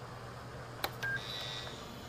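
Steady low electrical hum from a desktop computer speaker that has just been switched on, with a click a little under a second in, followed by two short high electronic beeps, the second longer and higher.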